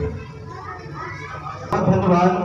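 Low murmur of children's voices chattering in a hall full of seated schoolchildren. Near the end a man's voice cuts in loudly, speaking.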